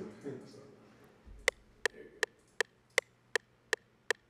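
FL Studio's metronome counting in before recording: a steady run of sharp clicks, about two and a half a second, starting a second and a half in, the two-bar count-in before the beat plays. A short laugh comes just before the clicks.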